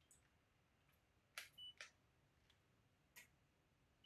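Near silence with three faint clicks, about a second and a half in, just under two seconds in and a little past three seconds, and a brief faint high beep among the first two: small handling sounds of a digital thermometer and a stirring stick in a glass pitcher of melted wax.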